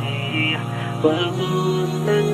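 Outro music: a chant-like melody wavering over a steady low drone that shifts pitch in steps.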